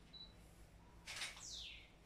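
A brief high chirp, then about a second in a short hiss and a high whistle falling in pitch: a bird call, over quiet room tone.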